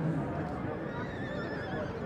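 A Welsh pony stallion of cob type (Section C) whinnying: one quavering call begins about half a second in and lasts about a second and a half, over a background murmur of voices.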